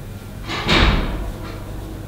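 A single brief, muffled thump with a short rustling tail about half a second in.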